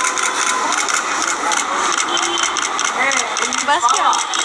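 Busy market crowd: many voices talking over one another, with light clicks and clatter throughout. It starts abruptly out of silence.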